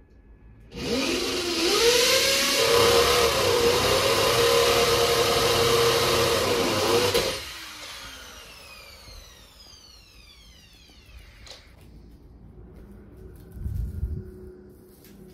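An electric motor switches on abruptly and runs loudly for about six seconds, then cuts off and whines down in pitch as it spins to a stop. A single thump comes at the very end.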